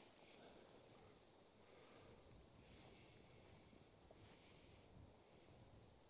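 Near silence: faint outdoor background with a few soft, brief hissy rustles.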